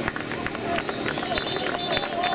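Football spectators in the bleachers talking and calling out over one another, with a few sharp knocks among the voices.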